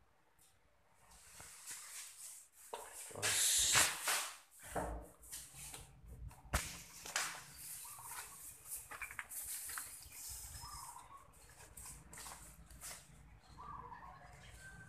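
Rustling and scraping handling noise from a handheld phone being carried, with a few sharp knocks; the loudest stretch comes about three to four and a half seconds in.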